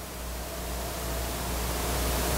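Steady hiss with a low hum underneath and no speech, growing gradually louder.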